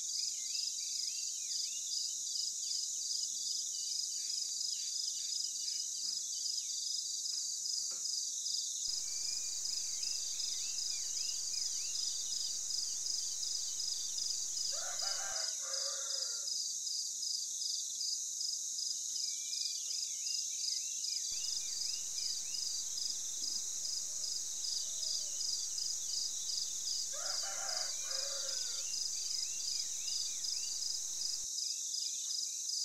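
Outdoor insect chorus with a high, steadily pulsing trill, and small birds chirping over it. Two brief, lower calls stand out, about halfway through and near the end.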